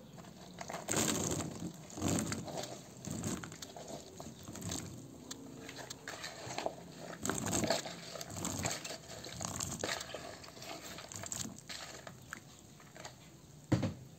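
Chopped cooked green beans being tipped into a bowl of beaten egg batter, landing in a series of short, irregular bursts that die away near the end.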